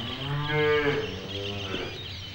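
Cattle mooing: one loud call about a second long that rises and falls in pitch, followed by a shorter, weaker call.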